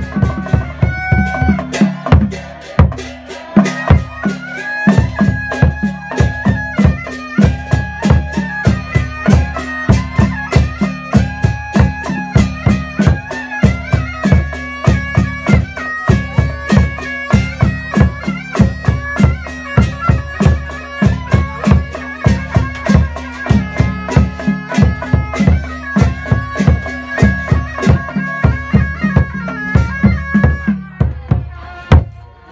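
Traditional funeral music: a reedy wind instrument plays a wavering melody over a steady drone, with drum beats about three a second.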